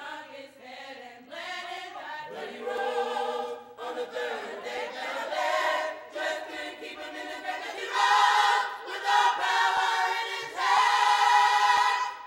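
Gospel choir of mixed male and female voices singing together without instruments, swelling much louder about eight seconds in.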